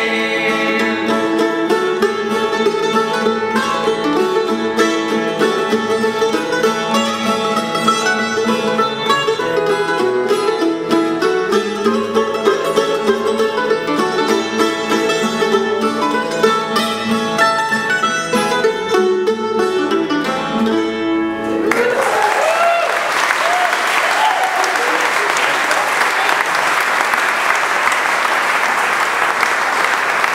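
Mandolin and acoustic guitar playing a gospel tune, which stops abruptly about 22 seconds in; audience applause follows and runs on.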